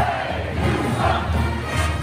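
Crowd of hockey fans shouting and chanting over a pep band playing, with a steady low beat about twice a second.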